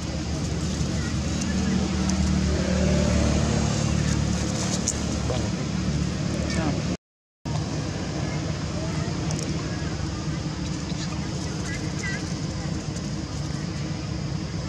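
Steady outdoor background of road traffic, with a low engine rumble swelling in the first few seconds and then fading back. The sound cuts out completely for about half a second midway.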